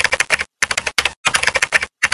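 Typing sound effect: rapid keystroke clicks in short runs, broken by brief pauses, as on-screen text is typed out.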